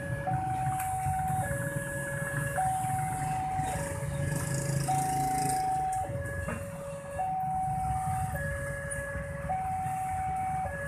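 Railway level-crossing warning alarm alternating between two electronic tones, high then low, each held about a second, warning that a train is approaching with the barriers down. Motorcycle engines run underneath.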